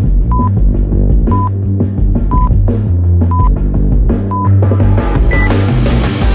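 Workout countdown timer beeping out the last seconds of an interval: five short identical beeps about a second apart, then one higher-pitched beep marking the end of the interval. Loud bass-heavy rock music plays throughout and is the loudest sound.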